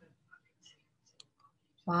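Near silence with a few faint, scattered clicks as an oil pastel stick is dabbed and rubbed onto paper.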